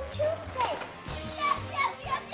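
Children's excited voices and squeals over background music.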